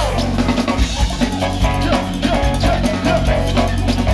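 Live band playing an instrumental groove, the drum kit to the fore with snare and kick hits and a steady bass line underneath, and pitched instrumental lines above.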